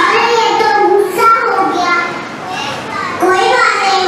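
A young child speaking lines in a high voice, easing off briefly about two seconds in, then carrying on.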